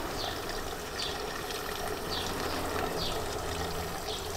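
Steady trickle of running water, with short high chirps that fall in pitch and recur about once a second.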